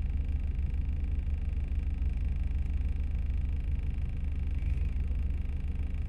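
Steady low hum of a car engine running, heard from inside the cabin.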